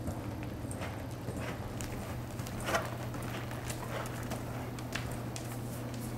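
Hoofbeats of a paint horse moving under a rider on the soft dirt footing of an indoor arena: muffled, uneven footfalls, with one louder knock about halfway through.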